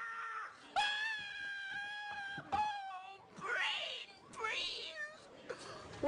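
A man screaming from brain freeze after chugging an icy cherry slushy: two long, held, high-pitched wails, the second higher, then shorter falling cries.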